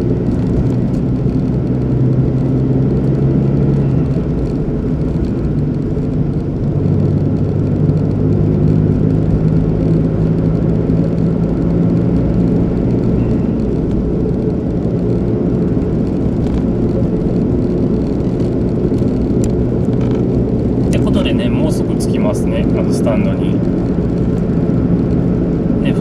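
Car engine and road noise heard from inside the cabin while driving, steady throughout, with the engine note shifting as the car changes speed. A cluster of sharp clicks comes near the end.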